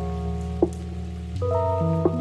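Intro music of sustained synth chords that change about one and a half seconds in, with a short click-like pop about half a second in.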